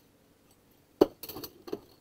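Family Chef stainless steel spatula set down into a plastic drawer of kitchen utensils: one sharp clink about a second in, then a few lighter clinks of metal against metal.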